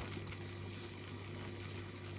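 Faint room tone: a steady low hum with light hiss, no distinct events.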